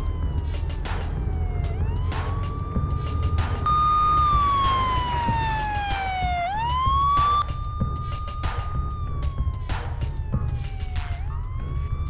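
Police siren wailing. Its tone holds high, slides slowly down over about two seconds, then sweeps quickly back up, going round about three times. A steady low rumble runs beneath it.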